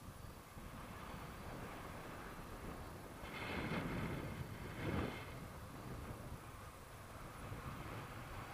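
Wind rushing over the camera's microphone in flight under a tandem paraglider: a steady low rumble that swells louder for about two seconds in the middle.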